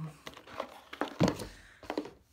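A cardboard box being handled and set down: a few light knocks and rustles, with a louder, dull thump about a second in.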